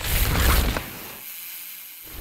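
Mechanical ratcheting clatter in two loud bursts over a deep rumble, cutting in suddenly, from the intro's sound design.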